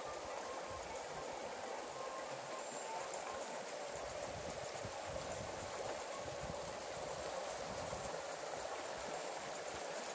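Shallow rocky stream running over stones, a steady rushing of water.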